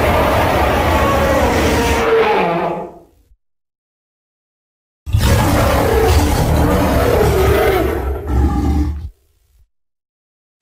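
Tyrannosaurus rex roar sound effect: a long, deep roar fading out about three seconds in, then, after a silent gap, a second long roar that breaks briefly near the end and stops about nine seconds in.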